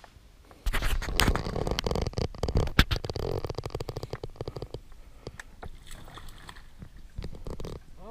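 Close rustling, knocking and rumble right at a body-worn microphone as the angler handles the rod and reel in a kayak. It starts suddenly about a second in, is loudest for the next few seconds, then thins to scattered clicks.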